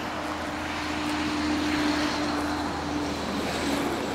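Distant engine noise with a steady hum and a faint high whine, swelling a little around the middle and then easing.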